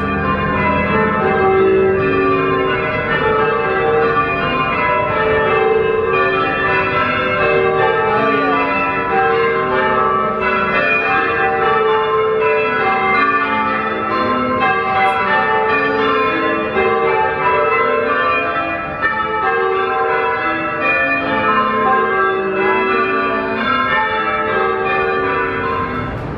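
Many church bells pealing continuously, their strikes overlapping in a dense, unbroken ringing.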